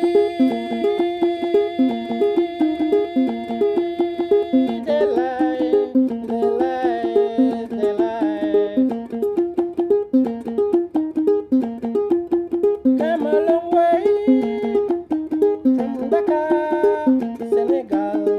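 An akonting, the Jola gourd-bodied folk lute, played as a rhythmic, repeating plucked figure, with a man singing over it in long held notes.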